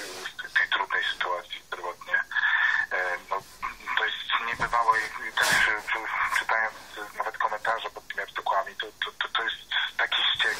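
Speech only: a man talking over a telephone line in a radio broadcast, the voice narrow and tinny.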